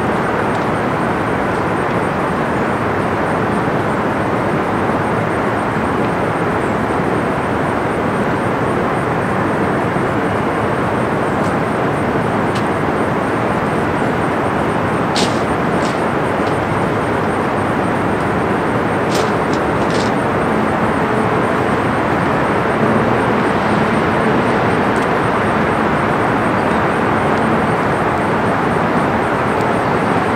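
A steady, even rush of outdoor background noise, with a few faint clicks about halfway through.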